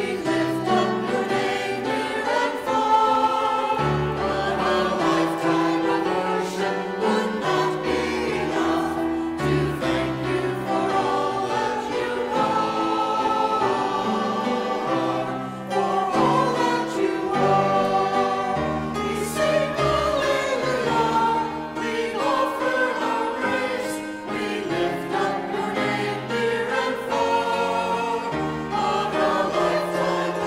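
Mixed church choir of men and women singing a praise anthem with instrumental accompaniment, lines such as "We lift up your name near and far" and "To thank you for all that you are", with sustained chords over a moving bass line.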